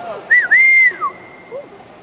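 A person whistling loudly from the stands, a spectator's cheering whistle for the rider: a short up-and-down note, then a longer held note that drops away at its end.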